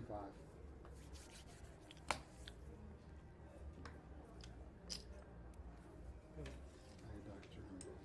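A few sharp clicks of casino chips being taken from the dealer's tray and set down on a blackjack table, the loudest about two seconds in.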